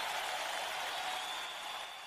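Audience applauding on a live worship recording, fading down near the end.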